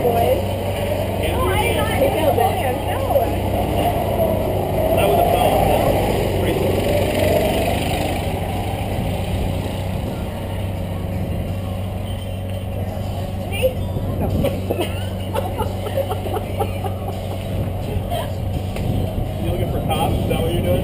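Go-kart engines droning steadily, their pitch rising and falling over the first several seconds, under indistinct voices and laughter.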